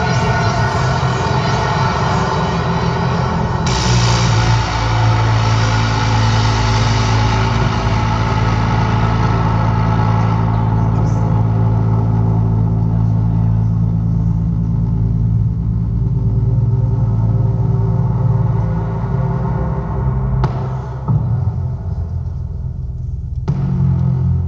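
Live synthesizer music: sustained droning chords, with a deep bass drone that swells in about four seconds in. The brighter upper layers fade away after about ten seconds, leaving mostly the low drone.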